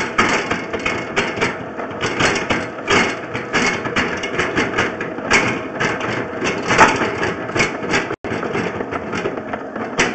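Sewer inspection camera equipment clattering as the camera is worked through a sand-laden drain line: a dense, irregular run of knocks and rattles over a steady mechanical noise, with a brief dropout near the end.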